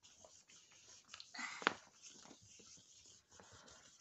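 Faint scratching and tapping of a toddler's pen on a drawing mat, with a short louder rustle and a sharp click about a second and a half in.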